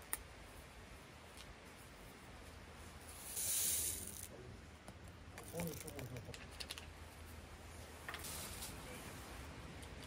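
Paper stick sachet being handled and torn open, with one loud tearing hiss about three and a half seconds in and a second, shorter one near the end, among small crinkles and clicks as its contents are shaken into a plastic cup of tea.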